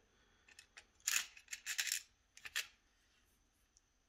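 Small cast metal model-kit parts clicking and rattling against a clear plastic parts box as they are picked through by hand, in a few short bursts.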